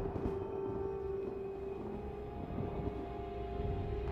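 Suspenseful horror film score: one steady held drone note over a low rumble.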